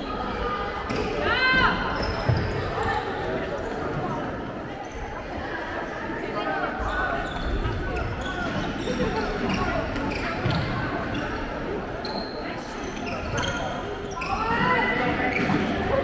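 Indoor handball game in a sports hall: the ball bouncing on the wooden floor among players' shoes, with players and spectators calling out, the voices getting louder near the end.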